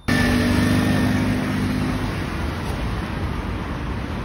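City street traffic: car engines running amid road noise, with a steady engine hum in the first two seconds or so.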